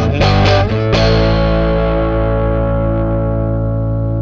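Distorted electric guitar playing a few quick chords, then one last chord struck about a second in and left ringing, slowly dying away.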